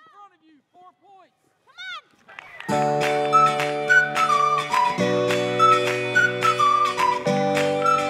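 A few brief shouts from spectators, then background music comes in nearly three seconds in. The music has sustained chords that change about every two seconds, with a high, sliding melody line over them.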